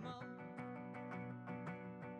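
Hollow-body electric guitar strummed in steady chords, the strokes coming several times a second and the chords ringing on between them.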